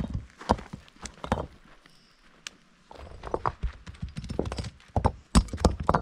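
Stones knocking and clacking against one another as rocks are handled and set into a dry-stone wall: a run of sharp knocks, a quieter pause in the middle, then thicker knocking, loudest near the end.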